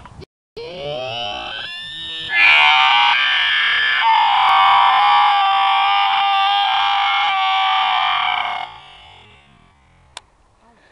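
A boy's long, loud scream. It rises in pitch over the first couple of seconds, jumps louder, holds for about six seconds and then breaks off near the end.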